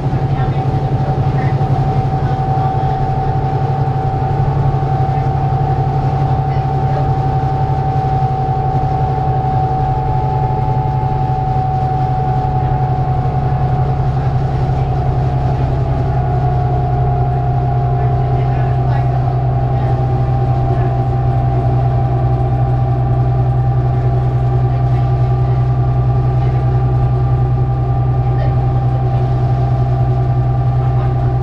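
Inside the cabin of a 2008 New Flyer D35LF transit bus under way, its Cummins ISL diesel and Allison B400R automatic transmission making a steady, very rumbly low drone. A steady whine runs over it and dips slightly in pitch about halfway through.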